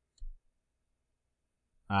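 Near silence, broken by one brief, soft low thump with a faint tick about a quarter second in; a man's voice begins near the end.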